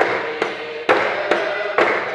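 Group hymn singing with a large double-headed barrel drum beaten about twice a second, each stroke a sharp knock over the voices.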